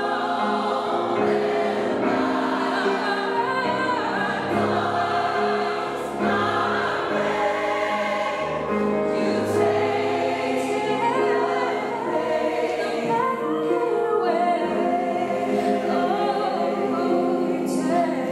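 Gospel choir singing with piano accompaniment, a female soloist's voice leading over the choir.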